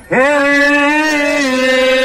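A man singing a carreiro's toada, an aboio-style ox-driver's song, into a microphone: after a brief gap he slides up into one long drawn-out note and holds it, the pitch stepping slightly lower near the end.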